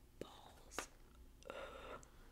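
Glossy magazine page being turned by hand: a few light paper clicks, then a short soft rustle in the last half second.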